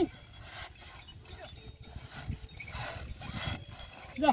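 A bullock cart hauled across a muddy field, with a low, uneven rumble of the wheels and hooves. A loud short call cuts off right at the start, and a couple of faint short calls follow.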